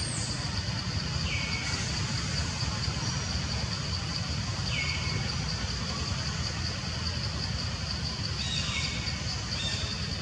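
Outdoor woodland ambience: a steady high-pitched insect drone over a low, even rumble, with a bird giving four short falling calls.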